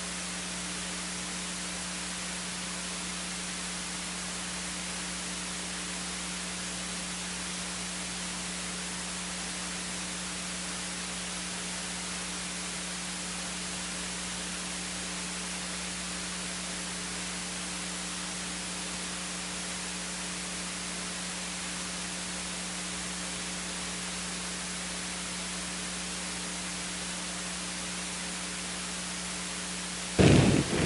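Steady static hiss with a constant low electrical hum underneath, unchanging throughout: the noise floor of the recording's audio feed, with no other sound in it.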